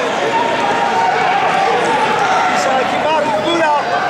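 Many voices shouting over one another at a wrestling match: spectators and coaches yelling encouragement to the wrestlers. A few single shouts stand out about three seconds in.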